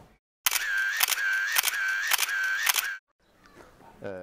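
A camera shutter-and-film-winder sound effect, five click-and-whir repeats about two a second, starting after a moment of silence and cutting off suddenly after about two and a half seconds.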